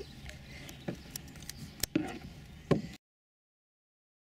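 Several short, sharp clicks and knocks over a faint outdoor background, then the sound cuts off to silence about three seconds in.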